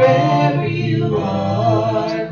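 Worship singing led by a man and a woman at microphones, a slow song in long held notes.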